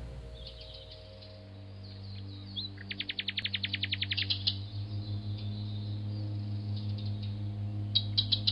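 Small birds chirping, with a fast trill of evenly spaced notes lasting about a second and a half near the middle, over a low steady drone.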